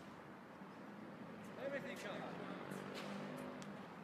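Faint, indistinct voices of people talking, with a few short sharp clicks in the second half.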